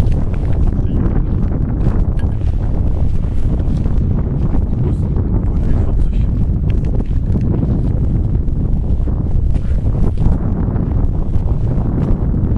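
Wind buffeting the camera microphone: a loud, steady low rumble.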